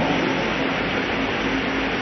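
Electric pedestal fans running: a steady even whoosh with a faint low hum.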